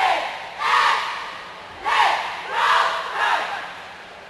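A cheerleading squad shouting a cheer in unison: a run of about four loud shouted calls, roughly one a second.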